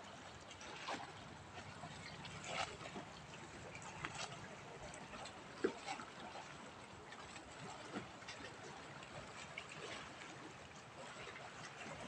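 Faint lake water lapping among granite boulders, with scattered brief clicks. The loudest click comes a little past the middle.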